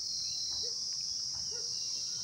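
Steady, high-pitched chorus of insects in the grass, an unbroken shrill drone.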